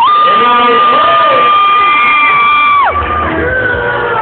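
A single voice holding one long high note, about three seconds, sliding up at the start and dropping off at the end, over music and crowd noise.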